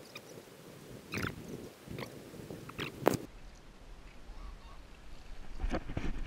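A few short bird calls, spaced about a second apart, heard over faint background noise on open water.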